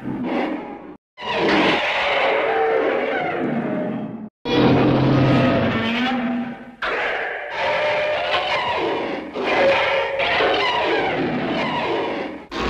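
Dialogue voiced as distorted, roar-like monster vocalizations rather than plain words, in several long phrases with short breaks about a second in and about four seconds in.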